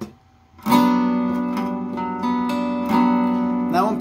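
Archtop guitar strumming a G major 7 chord about two-thirds of a second in. The chord rings on and is picked again a few times.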